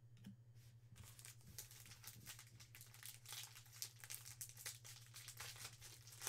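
Faint crinkling and tearing of a trading-card pack's foil wrapper being opened by hand: many small, irregular crackles starting about a second in, over a steady low electrical hum.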